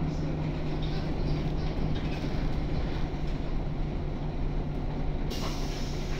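Jelcz 120M city bus heard from inside the passenger cabin, its WSK Mielec SWT 11/300/1 turbocharged straight-six diesel and running gear giving a steady low drone. About five seconds in, a sudden hiss of compressed air starts.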